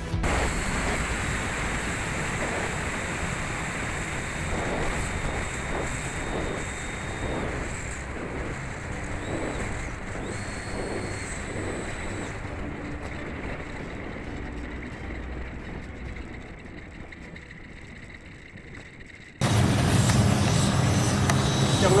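Model F-16's jet turbine heard from a camera on the aircraft: a high steady whine over heavy wind rush, the whine stepping up briefly about ten seconds in and the whole sound fading slowly. Near the end it cuts suddenly to the louder, deeper turbine noise heard from beside the runway.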